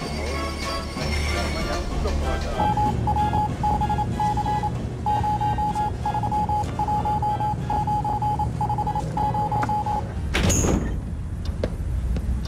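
Radio telegraph signal in Morse code: a single high beep keyed in short and long pulses for about seven seconds, over film-score music. A sudden short burst of noise comes near the end.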